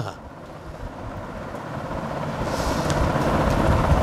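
A passing road vehicle, its engine and road noise growing steadily louder throughout.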